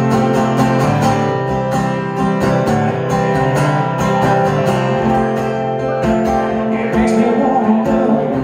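Acoustic-electric guitar strummed in a steady rhythm through a chord progression, an instrumental passage with no singing.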